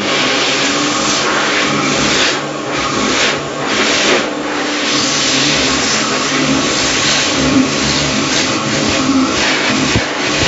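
Lovair Airfury high-speed hand dryer running at full blast: a loud, steady rush of air with a motor hum underneath. The air noise swells and dips a few times.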